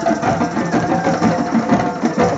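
A drum circle: many hand drums played together in a fast, dense rhythm.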